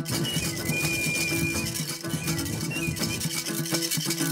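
Homemade wooden box guitar plucked in a quick, repeating rhythmic pattern, an instrumental passage with no singing.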